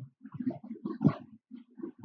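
A man's voice mumbling quietly and haltingly: short, low hesitation sounds, not clear words.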